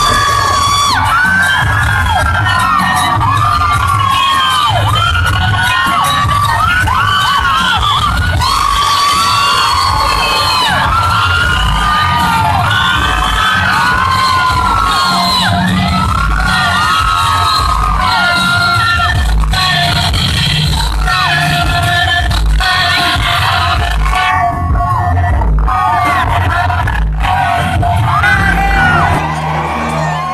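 Live concert music with a pulsing bass beat, loud and distorted as heard from within the crowd, with many fans cheering and screaming over it.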